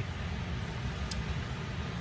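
Steady low background hum, with one faint tick about a second in.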